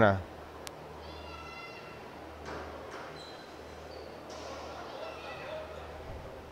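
Quiet indoor court ambience between rallies: faint distant voices over a steady low hum, with one sharp click about two-thirds of a second in and a couple of short high squeaks around the middle.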